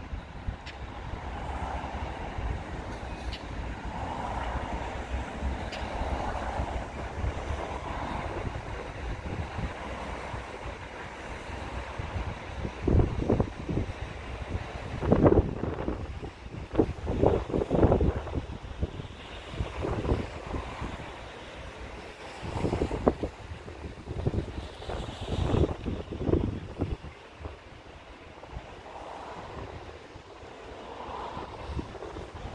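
Wind rumbling on the microphone, with irregular gusting buffets through the middle and later part, over a steady low rumble.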